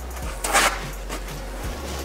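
A sheet of paper towel rustling as it is handled and folded, with one short, sharp crackle about half a second in. Faint background music sits underneath.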